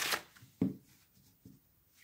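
Green Monarchs playing cards: the end of a riffle shuffle's bridge, the cards cascading together in a brief rush at the start, then one sharper card tap about half a second in and a few faint card-handling taps.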